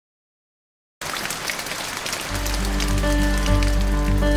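Silence for the first second, then the pattering of rain starts suddenly. About a second later background music with a deep bass and held notes comes in and grows over the rain.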